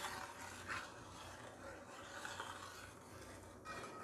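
Faint scraping and rubbing of a steel ladle stirring hair oil in a wide brass pan.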